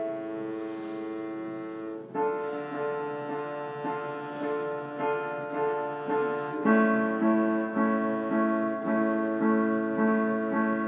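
Piano and cello playing together: piano notes and chords under long held cello notes. About two-thirds of the way in, the piano moves to quicker repeated chords.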